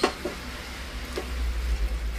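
A pot of vegetable soup boiling on the stove: a faint, steady noise over a low hum, after a sharp click at the very start.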